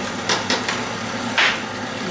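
Electric mixer running steadily as it beats the cake batter, with two light clicks and a short scrape of glass bowls on the counter partway through.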